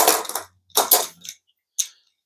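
Hand screwdriver working a screw in a circular saw's metal base plate: two short metallic scrapes and a light click near the end.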